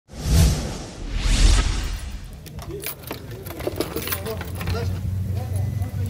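Two loud whoosh transition effects over an intro graphic in the first second and a half, then street sound: people's voices in the background over a low steady hum.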